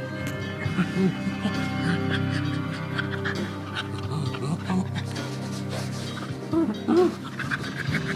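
Background music with steady held notes, and a pet panting close to the microphone, with two short louder sounds near the end.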